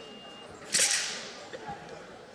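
A single sharp, whip-like swish of a southern broadsword (nandao) blade cutting through the air, about three-quarters of a second in, dying away within half a second.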